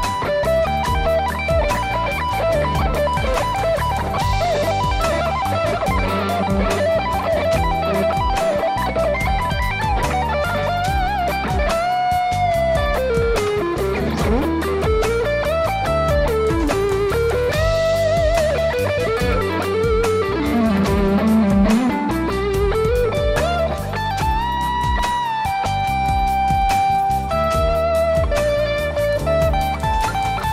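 Rock instrumental with a Stratocaster-style electric guitar playing lead over a backing track with bass and drums. Around the middle the guitar line swoops down in pitch and back up again in long slides.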